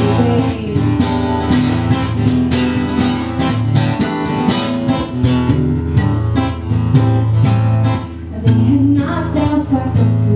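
Acoustic guitar strummed in a steady rhythm, an instrumental passage between sung lines of a song.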